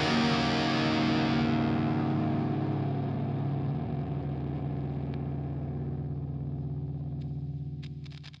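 Distorted electric guitar chord left ringing out as the final chord of an instrumental metal track, slowly fading, its treble dying away about a second and a half in. A few faint clicks near the end.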